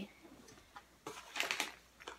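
Clear plastic packaging bag crinkling and rustling as it is handled, mostly in a short burst about a second in.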